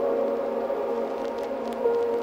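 Sustained ambient synth pad chords from a future garage track, with no bass or beat under them and a faint crackle on top; a new held note enters near the end.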